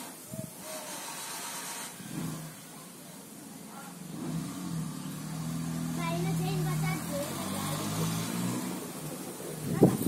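A motor vehicle's engine humming nearby, growing louder from about four seconds in and fading again, with faint voices in the background. A sharp knock near the end.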